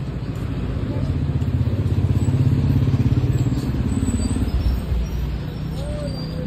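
A motor vehicle's engine passing close by, a low hum that grows louder to a peak about halfway through and then fades.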